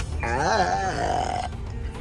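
A toddler's drawn-out babbling vocalisation that wavers in pitch and ends on a briefly held higher note, over the low rumble of the car cabin.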